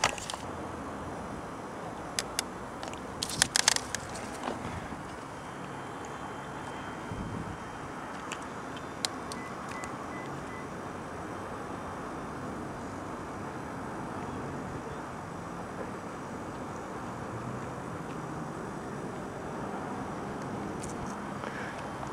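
Steady outdoor background rumble, with a few brief cracks and scrapes of twigs and bark as a person climbs in a bare tree, a quick cluster of them about three and a half seconds in.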